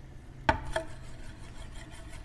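Steel Euler's disk dropped spinning onto its mirrored base: a sharp metallic clack about half a second in, with a brief ring. It then settles into a steady rolling whir of metal on glass as it spins and wobbles.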